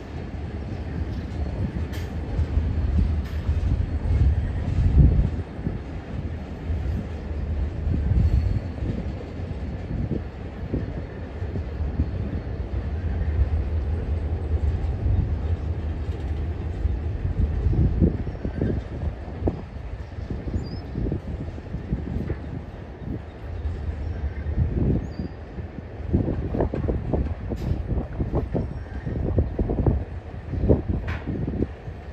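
Union Pacific local freight train, a diesel locomotive hauling boxcars, rolling by: a continuous low rumble of engine and steel wheels on rail that swells and eases, with occasional wheel squeal.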